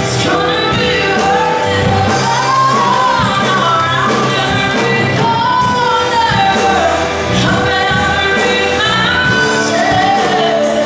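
Live worship band playing a song with sung vocals over a steady drum beat, with electric guitars and keyboard.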